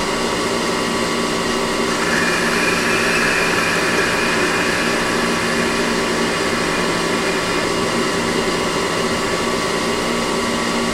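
CNC lathe running with its spindle spinning and the tool cutting the bar stock, turning it down: a steady whine with a cutting hiss that grows louder from about two seconds in to about seven seconds.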